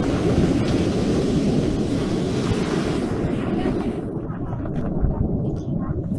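Wind buffeting the microphone in a steady rumble, with the wash of breaking surf behind it; the hiss of the surf fades about two thirds of the way through.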